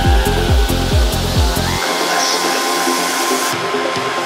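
Full-on psytrance track: a four-on-the-floor kick drum with rolling bass, about two and a half beats a second, drops out a little under two seconds in. What remains is a breakdown of sustained synth tones and a noisy wash.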